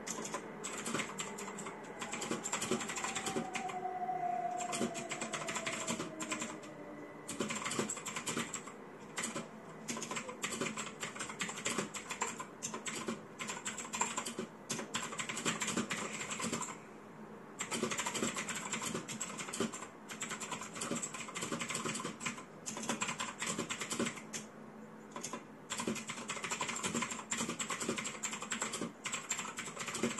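Fast, continuous typing on a mechanical computer keyboard, dense key clicks broken by a few brief pauses.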